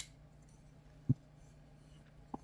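A titanium-handled liner lock folding knife being folded shut: a sharp metallic click at the start as the blade closes, then a short, louder low thump about a second in as the closed knife is handled.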